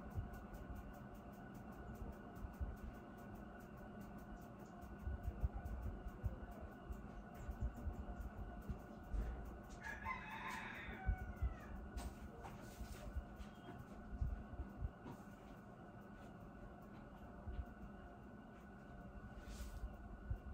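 Low room noise with one faint bird call about halfway through, lasting about a second.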